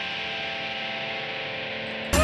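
Distorted electric guitar holding a quiet, sustained chord over a steady hiss, with no drums or voice.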